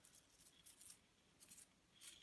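A finger drawn across the bristles of a toothbrush loaded with thinned white acrylic paint, flicking off a spatter: about three faint, brief bristly strokes.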